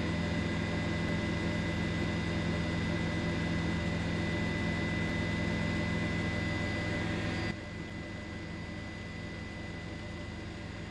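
Steady drone of a helicopter's engine and rotor, heard from the aircraft carrying the camera; it drops suddenly in level about seven and a half seconds in and carries on quieter.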